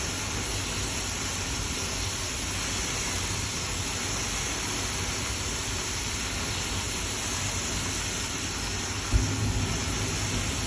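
Fire burning on a house deck where a barbecue has caught: a steady loud hissing rush. About nine seconds in there is a low whoomp as the flames flare up.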